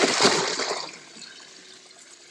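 Water splashing in a boat's livewell as a big largemouth bass thrashes, a loud burst in the first second that dies down to faint trickling and dripping.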